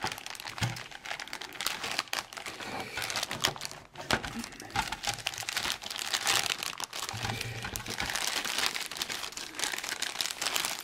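Clear plastic parts bag of a plastic model kit crinkling and rustling continuously as it is handled and cut open with scissors.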